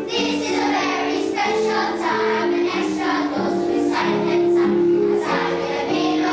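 Children's choir singing a song in held, changing notes.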